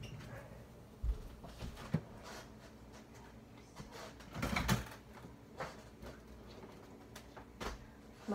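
A refrigerator door being opened in a kitchen, with a few scattered soft knocks and clicks; the loudest is a cluster of knocks about halfway through.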